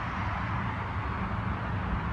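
Steady outdoor background noise: a low rumble with a faint hum under an even hiss, with no distinct events.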